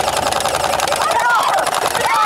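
Battery-powered Splat R Ball gel-bead blaster firing on full auto: a steady motor whine with a rapid, even rattle of shots. A voice calls out over it from about halfway through.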